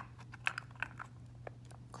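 A handful of light, scattered clicks and taps, as of small hard objects being handled, over a steady low hum.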